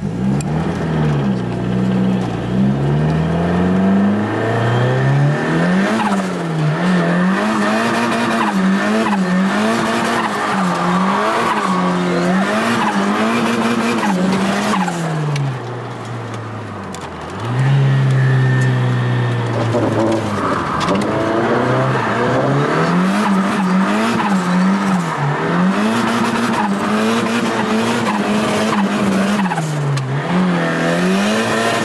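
Ford Sierra Cosworth's turbocharged 2.0-litre four-cylinder, heard from inside the cabin, revving hard and falling back again and again as the car is held in a drift, with tyres squealing. About halfway through the revs drop low for a second or two, then climb hard again.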